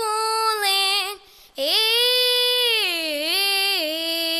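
A boy singing solo into a microphone: a held note, a brief break just over a second in, then a long sustained note that dips in pitch around three seconds in before levelling off.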